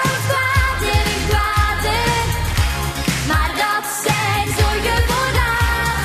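Pop song from a stage musical, sung in Dutch by a solo voice over a full band with a steady drum beat.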